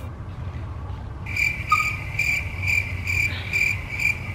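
Cricket chirping: a high chirp that starts about a second in and repeats evenly about twice a second, over a low steady hum.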